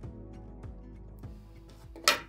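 Soft background music of plucked acoustic guitar notes.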